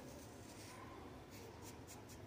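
Faint scratching of fingertips drawing through coloured rangoli powder on a smooth board, with a few light scrapes in the second half.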